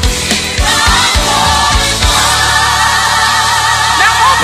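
Gospel worship song with a choir singing over a band; about halfway through the drums stop and the voices and instruments hold a long closing chord.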